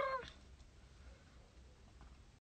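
A woman's voice trails off with a falling pitch in the first moment, then only a faint low hum remains inside the car.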